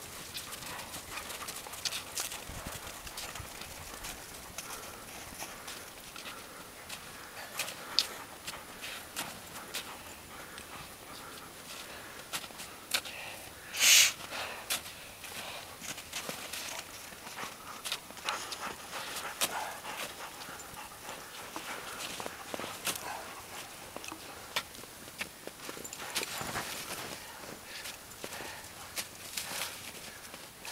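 Boots and crutch tips crunching into firm snow in an uneven stepping rhythm, with one louder, brief crunch about halfway through.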